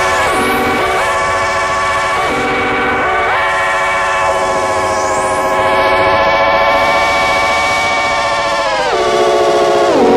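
Experimental electronic music: a synthesizer tone with many overtones that wavers slightly. It steps between a high and a low pitch every second or so, then holds the high pitch for about five seconds, and drops low again near the end, over steady hiss.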